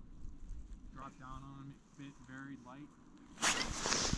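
Faint distant voices, then about three and a half seconds in a sudden, louder rustling noise.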